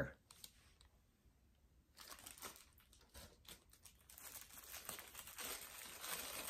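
Faint crinkling of small clear plastic bags being handled. It starts about two seconds in and grows busier toward the end.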